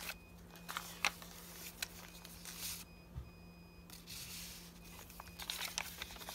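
Paper pages and tags of a handmade junk journal rustling and flipping under the hands. Faint electronic beeps from a clothes dryer come in short spells in the background; this is the dryer's end-of-cycle anti-wrinkle signal. A steady low hum runs underneath.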